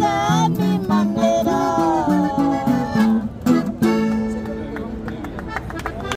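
Acoustic guitars and a woman's voice closing a corrido: a long, wavering sung note over plucked guitar runs, then a final strummed chord that rings and slowly fades.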